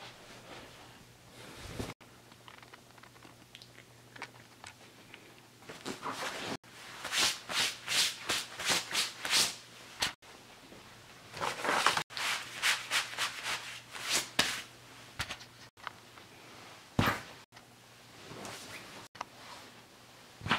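Nylon Army PT jacket and clothing rustling and swishing as it is handled and put on. There are two runs of quick sharp strokes, about four a second, with single scuffs between them, broken by brief dropouts.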